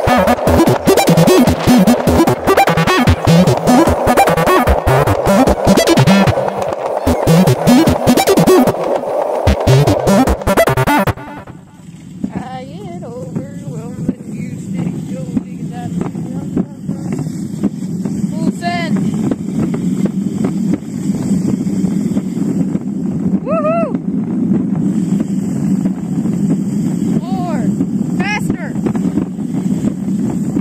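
Background music for about the first eleven seconds, then it cuts out to the steady drone of a small mini bike's motor towing a wagon, with wind on the microphone. A few short, high rising squeaks come through the drone.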